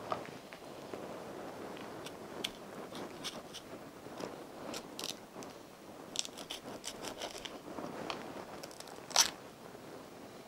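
A knife cutting through the thick rind of a ripe cocoa pod on a wooden cutting board: a run of small crunches and scrapes, with one louder crack near the end.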